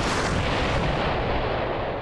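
A long, steady rumbling blast of noise, dense from deep bass up into the hiss range, that swells in as the music fades and slowly thins out at the top near the end.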